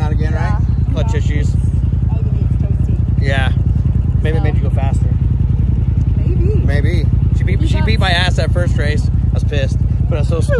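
A UTV engine idling steadily, a loud low even rumble.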